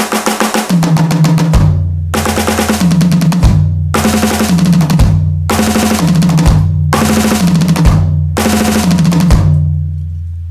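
Electronic drum kit played in fast sixteenth-note triplet runs, snare and then high tom, each run ending on a floor tom and bass drum hit. The phrase repeats about every one and a half seconds, six times.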